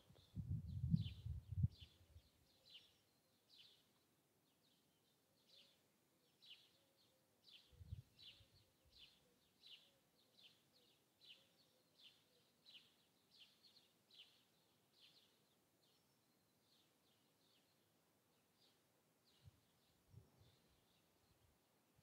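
Faint small-bird chirps, short high notes repeated about twice a second, over near-silent outdoor quiet. A few low muffled rumbles in the first two seconds are the loudest thing.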